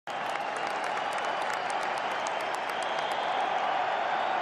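A large football-stadium crowd: steady crowd noise with sharp claps standing out over the first two and a half seconds.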